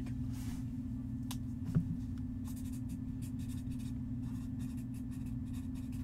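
Faint scratching and light handling noises, with a few soft taps, one a little louder just under two seconds in, over a steady low hum.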